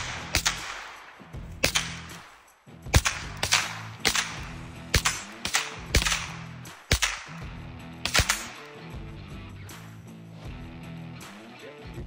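Semi-automatic rifle fired one shot at a time, each trigger pull released and pulled again: about a dozen sharp shots at irregular intervals, most of them in the first eight seconds, each with a short echo.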